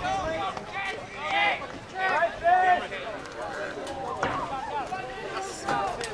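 Spectators chattering, several voices talking over one another with no words clear.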